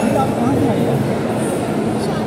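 Busy indoor crowd hubbub: many overlapping voices over a steady low hum.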